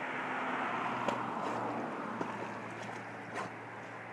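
Steady rush of churning water, with a few faint splashes from a dog paddling in a muddy pool. A faint low hum runs underneath.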